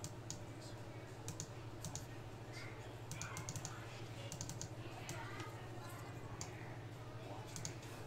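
Computer keyboard typing: irregular, quick key clicks in small runs, over a steady low electrical hum.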